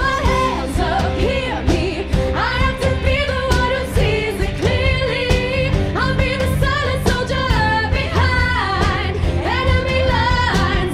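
Women singing a rock-pop musical-theatre song over a live band of drums, electric guitar, bass guitar, cello and piano.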